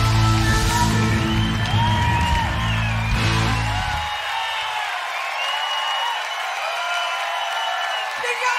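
A live band's final chord, with low bass and guitar notes, rings out and stops about four seconds in, over a concert crowd cheering and whistling. The crowd's cheers and whistles carry on alone after the chord ends.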